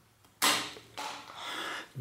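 Cable cutters snipping through a steel gear-shift cable: one sharp snap about half a second in, then a quieter stretch of handling noise.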